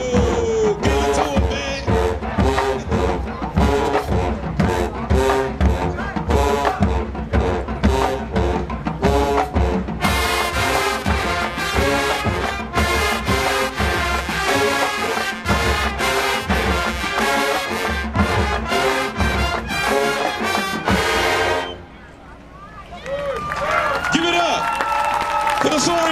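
High school marching band playing: brass section over a drumline beat, growing fuller partway through. The music cuts off abruptly about four seconds before the end, leaving crowd noise.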